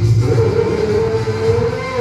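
Live band music on electronic keyboards, with a long, slightly wavering note held over a steady low accompaniment.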